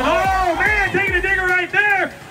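Only speech: a man's voice calling the race, which the recogniser left untranscribed.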